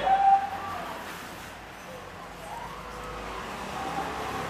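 Faint felt-tip marker writing on a whiteboard, with short squeaky tones from the tip, over low room noise.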